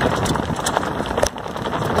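Wind rushing over an open-air microphone, a steady noisy rush, with a few light metallic clicks from hands working at the bolted hub of a wooden wind-generator blade.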